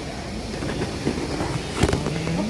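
Rustling and knocking of a handheld phone camera being fumbled, with one sharp knock near the end.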